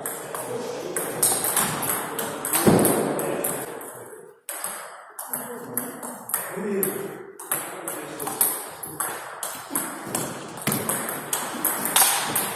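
Table tennis rally: the ball clicking sharply on rackets and the table in quick irregular succession, with one harder hit in the first few seconds.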